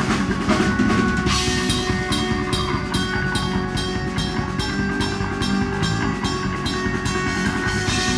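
A melodic black metal band playing live: bass and guitar holding sustained notes over a drum kit pounding a steady, fast beat with constant cymbal hits, loud throughout.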